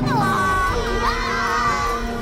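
Several high-pitched voices shouting together in long, held cries, over music.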